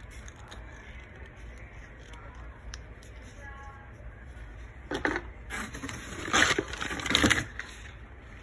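Packaging rustling and crinkling as products are handled and pulled out of a cardboard shipping box, in a few loud bursts in the second half.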